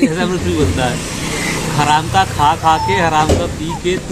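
Voices talking as a car passes on the street, its engine and tyre noise swelling and fading within the first two seconds.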